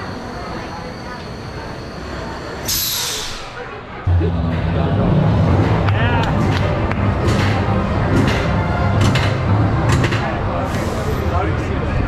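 Roller coaster station noise with voices. A short high hiss comes about three seconds in. Then the sound jumps suddenly louder into a busier din with a low steady hum and scattered sharp clicks.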